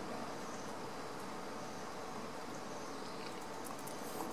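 Steady, even background hiss with a faint constant hum and no distinct events: room tone.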